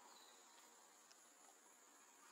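Near silence with a faint, steady high-pitched drone of insects, with a tiny tick about a second in.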